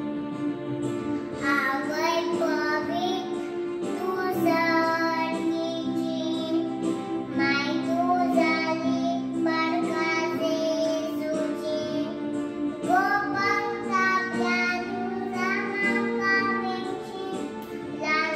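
A young girl singing into a microphone over instrumental accompaniment with sustained chords; her voice comes in about a second and a half in and goes on in phrases.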